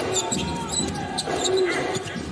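Basketball being dribbled on a hardwood court, a few sharp bounces over steady arena crowd noise.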